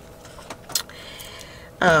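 Quiet handling of paper and waxed thread: a couple of light ticks, then about a second of soft rustling as the thread is pulled through the pierced pages. A voice says "oh" at the very end.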